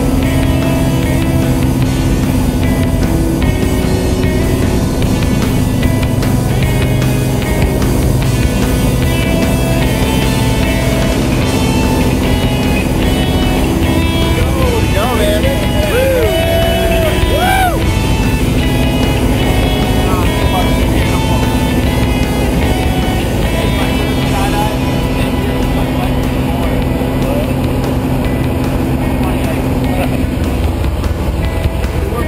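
Steady drone of a light single-engine plane's engine and propeller through the takeoff and climb, with music laid over it. A singing voice slides through notes about halfway through.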